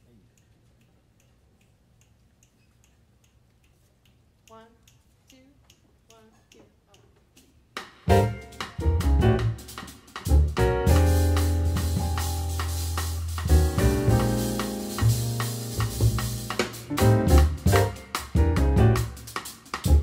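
Live jazz band of grand piano, upright double bass and drum kit starting a tune. The first few seconds are very quiet, with faint ticking and a few soft notes. About eight seconds in the whole band comes in loud together and plays on with a busy rhythm.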